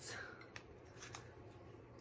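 A few faint clicks and rustles as a mug holding a plush toy and wrapped candies is handled and put down.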